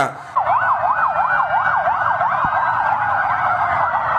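Several police patrol vehicle sirens sounding together, out of step with one another. They rapidly sweep up and down in pitch, a few times a second, starting about a third of a second in.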